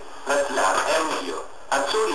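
A person's voice, with a brief pause about one and a half seconds in.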